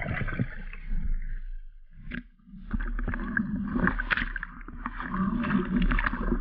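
Underwater commotion of a speared carp struggling in silt while the spearfisher grabs it: muffled churning water with many small knocks. It starts suddenly and breaks off briefly about two seconds in.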